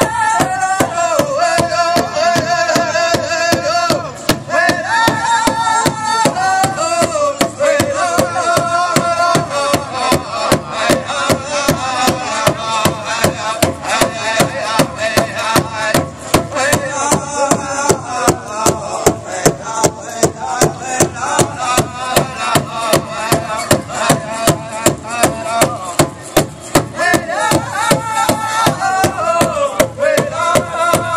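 Pow wow drum group singing an intertribal song: several voices in high, falling phrases over a steady, even beat on a shared big drum.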